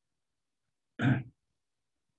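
A man clears his throat once, briefly, about a second in; the rest is silent.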